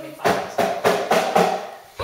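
A quick run of about five knocks, a little under four a second, each with a short pitched ring, heard like a drum pattern.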